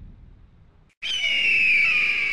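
Production-logo sound effect: the end music fades out, then about a second in a sudden loud, high whistle-like tone starts, gliding slightly down in pitch and holding.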